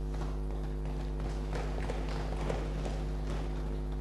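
A pause in the speech: a steady low electrical hum in the microphone feed, with faint scattered light ticks and taps.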